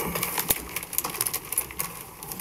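Rustling and crackling handling noise close to the microphones, full of sharp irregular clicks, with faint voices underneath.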